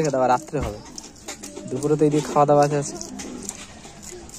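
A pigeon cooing: two low calls, one near the start and a longer one about two seconds in.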